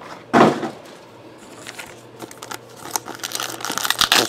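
Paper trading-card pack wrappers rustling and crinkling as the packs are handled, with one louder rustle about half a second in, then scattered light ticks and taps.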